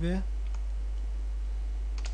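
A few faint computer keyboard keystrokes, isolated clicks, over a steady low hum.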